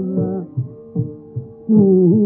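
Carnatic concert music on an old, narrow-band radio recording. A gliding vocal and violin phrase ends about half a second in, leaving a single held note under a few soft percussion strokes. The full ensemble comes back in loudly near the end.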